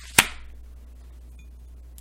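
A single sharp click or snap a fifth of a second in, dying away within half a second, followed by quiet room tone with a steady low hum.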